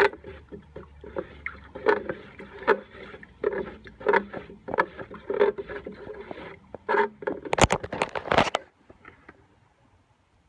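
Water sloshing in a plastic watering can as it is stirred with a flat stick, about one stroke every 0.7 s, mixing nematode powder into the water. Near the end comes a quick run of sharp, loud knocks, then the stirring stops.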